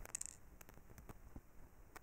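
Near silence with a few faint clicks and scrapes, mostly in the first half second, as the metal thread mast of an APQS Turbo bobbin winder is set into its hole in the winder's top.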